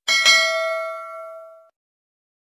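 Notification-bell 'ding' sound effect: two quick bell strikes a fraction of a second apart, the second the louder, ringing on and fading out after about a second and a half.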